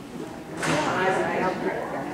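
Indistinct speech in a large hall, starting about half a second in.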